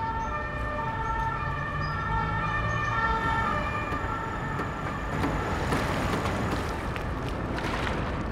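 A distant emergency-vehicle siren over steady city traffic rumble, its level tones switching pitch every half second or so.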